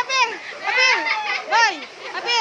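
Young children's high-pitched voices calling out in short, rising-and-falling bursts as they play.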